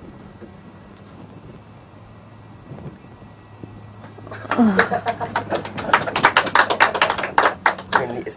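Quiet room tone for about four seconds, then people laughing in quick, rapid bursts that carry on to the end.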